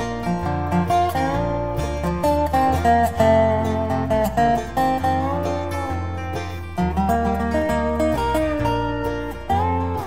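Instrumental break of a bluegrass song: an acoustic string band with guitar and plucked strings, a lead melody whose notes bend in pitch, over a walking bass line.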